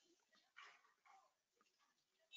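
Near silence: faint room tone with a few soft, brief noises.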